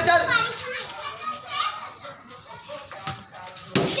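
Children calling out during a street cricket game, with one sharp knock near the end as a cricket bat strikes a tennis ball.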